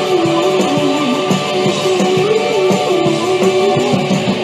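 Indie pop band playing live, guitars to the fore, with a wavering sustained melody over a steady full-band backing.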